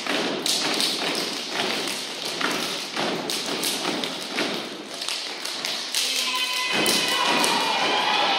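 Step-dance group on stage stomping and clapping: a run of sharp thuds and slaps. About two seconds from the end, voices shouting join in.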